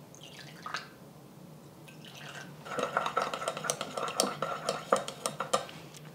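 A thin pour of water trickling into a small ceramic bowl of sauce, then a chopstick stirring it, clicking quickly and unevenly against the sides of the bowl for about three seconds.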